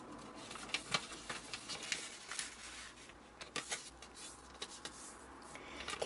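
Origami paper being folded along its diagonals and creased flat by hand: faint rustling with scattered crisp crackles of the paper.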